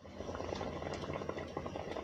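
Bottle gourd and shrimp curry simmering in a pot: steady soft bubbling with many small pops.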